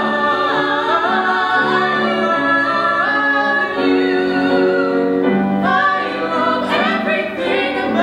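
Three singers, two young women and a young man, singing a slow ballad together in harmony, holding long notes with vibrato.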